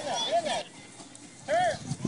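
Children's short high-pitched shouts during play: a quick few near the start and another about one and a half seconds in.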